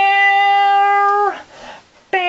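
A man singing one long, high note on a vowel, held steady for over a second and then sliding down as it ends.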